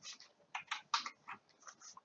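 A series of about eight light, irregular clicks over two seconds from working the computer's controls as the planetarium view is zoomed out.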